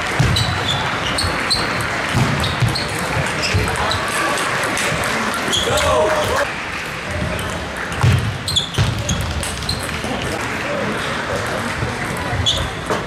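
Table tennis ball clicking off bats and the table in a rally, sharp ticks about two a second, with more ball clicks from neighbouring tables. Voices and low thuds echo through a large sports hall.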